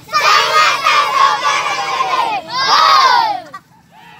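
A group of young boys in a team huddle shouting a cheer together in unison, counted in beforehand: one long shout, then a second, shorter shout about two and a half seconds in.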